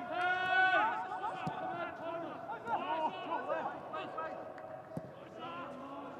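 Men's voices shouting across a football pitch with no crowd noise: one long high-pitched call at the start, then shorter shouts that grow fainter.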